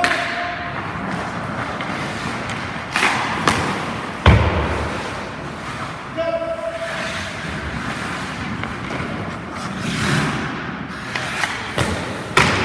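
Ice rink during a goalie drill: skate blades scraping the ice over a steady hiss, with a handful of thumps of pucks and sticks striking pads, ice and boards, the loudest and deepest about four seconds in, echoing in the large rink.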